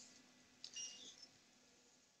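Near silence, with one short, faint electronic beep a little under a second in.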